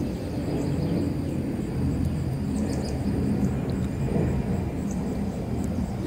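Airplane passing overhead: a steady low rumble.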